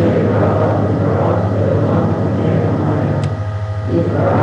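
A congregation singing together from prayer books, with a short break between phrases near the end. A steady low hum runs under it on the recording.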